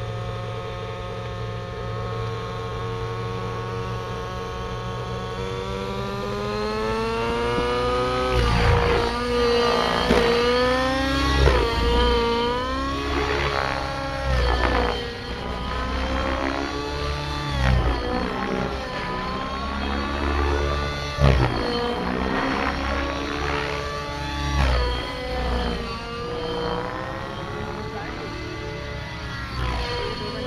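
Nitro-powered radio-controlled model helicopter: the glow engine and rotors run steadily, then climb in pitch over a few seconds as it lifts off, and afterwards the pitch sweeps up and down again and again as it flies past and manoeuvres.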